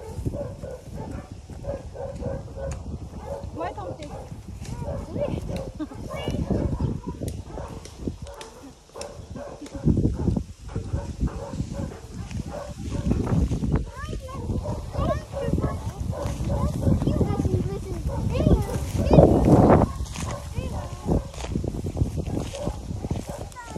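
People's voices in the open, with a laugh about seven seconds in.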